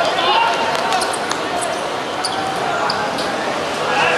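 Players calling out to each other during a five-a-side football match on a hard court, with the ball being struck and short sharp sounds of play on the court surface.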